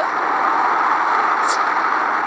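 Steady, even rushing noise, like hiss in the background of a recorded phone conversation, with no voice.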